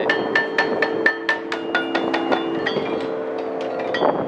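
Outdoor playground metallophone, its metal bars struck with a mallet: a steady run of notes, about four strikes a second, each note ringing on under the next.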